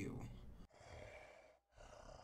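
A woman's spoken word trailing off in the first half second, then faint room tone with a brief drop to dead silence about one and a half seconds in.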